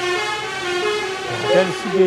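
A vehicle horn sounding one long, steady blast of almost two seconds, with a man's voice starting over it in the second half.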